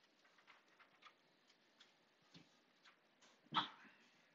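Near silence: room tone during a pause, with a couple of tiny clicks and one brief faint sound about three and a half seconds in.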